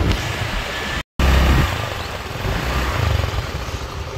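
Road traffic: passing vehicle and motorcycle engines under a steady noisy hiss, with uneven low rumble of wind on the microphone. The sound drops out completely for a moment about a second in, then resumes.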